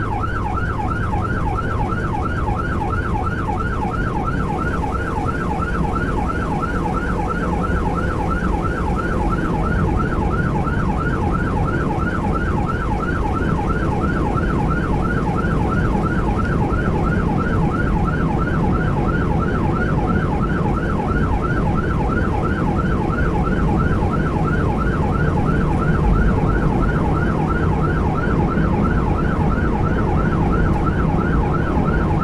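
Electronic emergency-vehicle siren on yelp, a fast rising-and-falling wail repeating several times a second without a break, heard from inside the vehicle's cab over engine and road noise.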